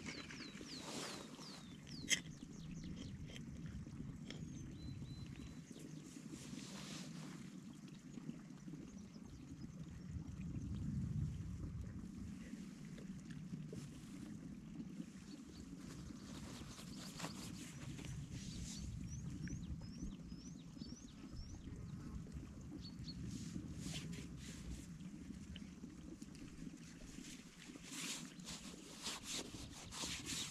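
Quiet outdoor ambience with faint, scattered bird chirps, including a quick run of short chirps, and occasional rustling of paper and plastic wrappers as food is handled. A sharp click comes about two seconds in.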